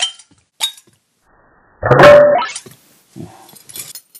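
A glass soda bottle clinks lightly twice, then about two seconds in comes a loud, short vocal outburst, followed by a quiet murmur near the end.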